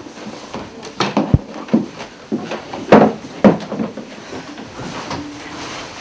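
A string of short knocks, bumps and rustles from people moving about on wooden beds and handling things, with the sharpest knocks about one and three seconds in.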